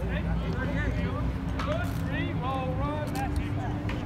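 Distant shouts and calls from players and coaches across a football practice field, over a steady low hum, with a few sharp knocks around the middle.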